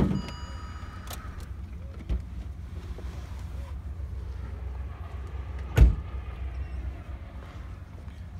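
A car's cabin and door sounds: a sharp clunk at the start, then a steady electronic warning chime for about a second. About six seconds in, the car door shuts with a heavy thud, over a constant low rumble on the microphone.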